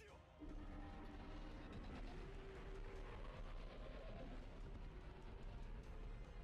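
Faint, steady low rumbling noise from the anime episode's soundtrack during an action scene, setting in about half a second in.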